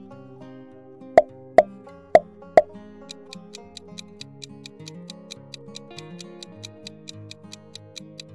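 Light plucked background music with four sharp pops in quick succession between one and three seconds in, as the quiz moves to the next question. From about three seconds in, a countdown timer ticks quickly and evenly over the music.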